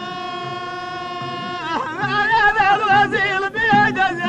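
Amazigh folk singing: a man's voice holds one long, steady high note. Just before halfway it breaks into a wavering, ornamented melody, over low, regular thuds.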